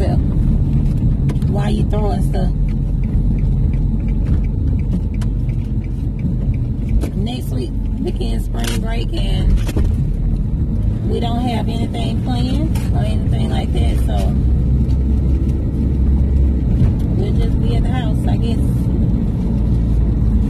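Steady low rumble of road and engine noise inside a moving car's cabin, with a voice coming in now and then.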